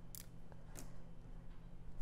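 A few faint, short ticks and crinkles of a small die-cut vellum butterfly handled between the fingertips as its wings are folded up.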